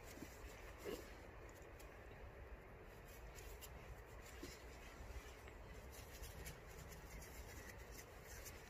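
Near silence: faint scratching and rustling of hands working garden soil, with a few soft ticks, over a low steady background rumble.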